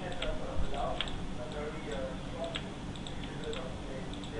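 A few scattered clicks of a computer mouse, as a healing brush is dabbed onto an image, over a faint murmur of background voices.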